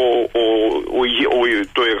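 Speech only: a man talking in Greek, hesitating on drawn-out 'o' sounds.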